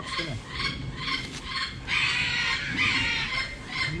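A bird calling over and over, a steady run of short notes about two a second, with plastic wrapping crinkling in the middle.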